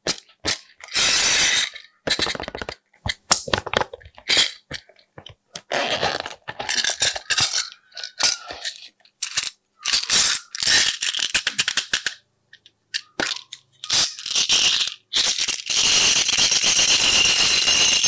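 Close-miked handling of small plastic toppings containers: sharp clicks and taps, with sprinkles and glitter rattling as they are shaken out onto slime in several bursts, the longest near the end.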